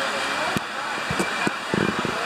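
Steady beach ambience: an even wash of surf with faint distant voices, and a few short, soft knocks in the second half.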